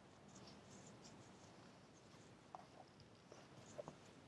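Near silence, with a few faint soft clicks and rustles from a large hardcover picture book being opened and its pages handled, mostly in the second half.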